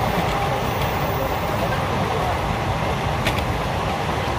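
Moving passenger train heard from inside the carriage at an open window: a steady running rumble with rushing air, and one faint click about three seconds in.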